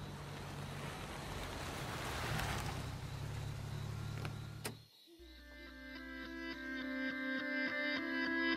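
Pickup truck engine idling with a steady low hum and hiss, ending in a click and a sudden cut about five seconds in. A held musical chord then fades in and swells.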